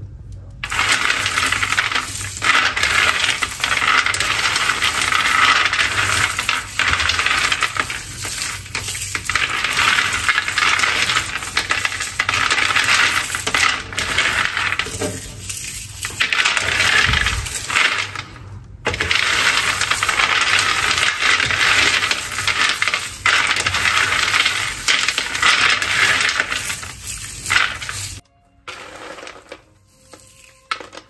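Freshly air-roasted peanuts clattering against one another and a ceramic dish as hands stir, scoop and drop them, with a brief break a little past halfway; the clatter stops shortly before the end.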